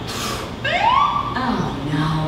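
A short rising siren whoop, like a police car's, climbing in pitch about half a second in.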